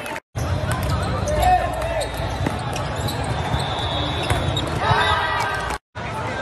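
Indoor volleyball game sound in a large hall: players' shouts and background chatter over a steady low rumble, with a few sharp ball hits. The audio drops out completely for a moment just after the start and again just before the end.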